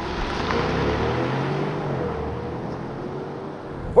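2022 Range Rover P530's twin-turbo 4.4-litre V8 accelerating, its engine note rising through the first second or so and then holding steady, over a steady hiss of road noise.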